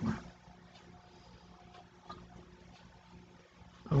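Near silence: a faint low room hum with a few faint soft handling ticks.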